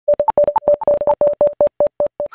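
A fast run of short electronic beeps, about ten a second, mostly on one pitch with a few higher beeps mixed in, spacing out slightly toward the end: a synthesized sound effect for a logo animation.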